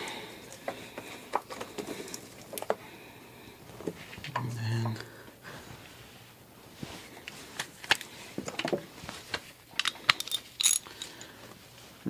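Light metallic clicks and knocks of hands and hand tools working in a car's engine bay as the power steering belt is taken off. A denser run of clicks comes near the end.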